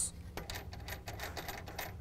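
Light, rapid metallic clicking and clinking as the nut on a front bolt of a tonneau cover side rail is loosened.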